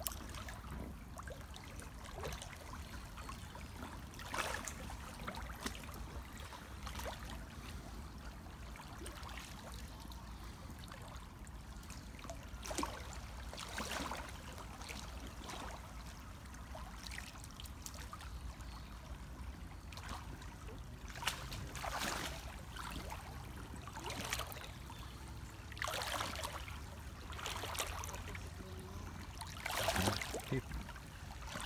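Shallow river water running over a gravel bed, with a short splash every few seconds.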